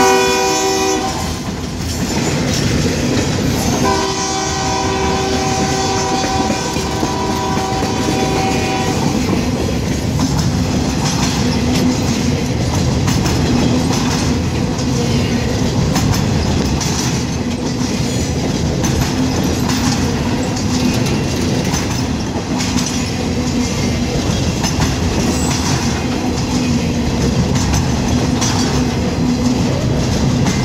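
Diesel locomotive horn sounding at close range: a blast that ends about a second in, then another held for about five seconds. After that, the steady rolling noise and clickety-clack of empty flatcar wheels passing over the rails.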